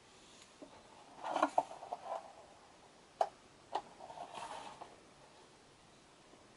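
Close handling noises: short rustling scrapes, then two sharp clicks about half a second apart, then another short rustle.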